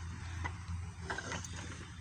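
A few faint clicks and creaks from a steel barbell shifting and rolling in the hand during a one-handed wrist curl, over a low steady hum.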